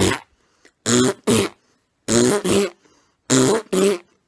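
Short, throaty vocal sounds from a person, mostly in pairs about a third of a second apart and repeated four times, like coughs or throat clearing.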